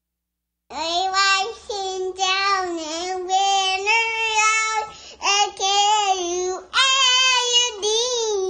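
A toddler girl singing unaccompanied in a high, clear voice. She starts under a second in, after a moment of silence, and sings in phrases broken by short pauses.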